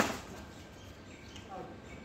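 Badminton racket striking a shuttlecock: one sharp smack right at the start, echoing briefly in the hall.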